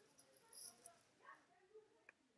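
Near silence: the audio of the video playing back in iMovie is turned almost all the way down, leaving only faint traces of it.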